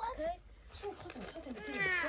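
Kittens mewing: a few short, falling mews, then a higher meow just before the end.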